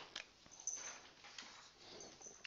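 Faint squeak of a marker being drawn across a whiteboard: a short high-pitched squeak about two-thirds of a second in, with a couple of light clicks of the pen on the board near the start.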